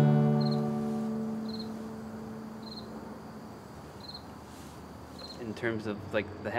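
Last strummed chord of an acoustic guitar ringing out and fading away over about three seconds, while a cricket chirps about once a second.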